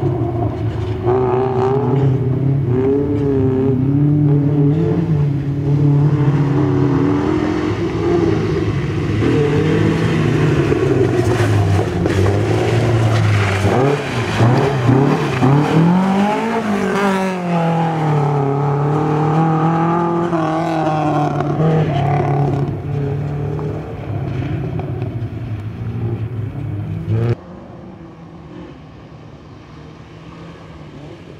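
BMW 2002 rally car's four-cylinder engine being driven hard, the revs rising and falling through the corners, loudest as it sweeps close by around the middle. Near the end the sound drops abruptly to a much fainter engine note.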